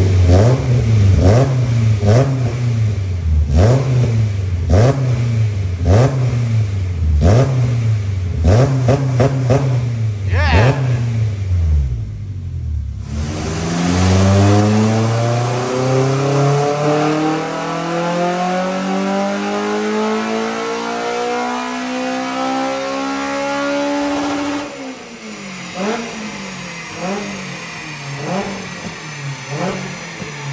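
K20 inline-four in a Toyota MR2 Mk3, through a full three-inch exhaust with two silencers, revved in quick repeated throttle blips, more than one a second, for about the first twelve seconds. After a cut, the engine pulls on a rolling road in one long, steadily rising rev for about eleven seconds, then drops back to quieter blips near the end.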